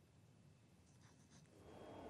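Near silence: room tone, with a faint steady background noise fading in near the end.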